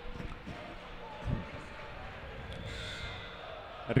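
Basketball arena ambience: a murmur of voices in the hall under faint music over the public-address system, with two low thumps, one just after the start and one about a second later.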